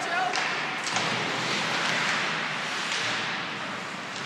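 Ice hockey game sound in an arena: a steady hiss of skates on the ice and spectators' voices, with a couple of sharp knocks of stick or puck in the first second.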